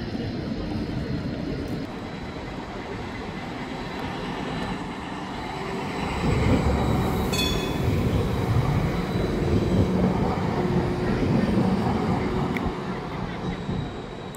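Basel low-floor city tram passing close by on street track: a rolling rumble that swells from about six seconds in and eases off near the end, with a brief high-pitched tone about seven seconds in.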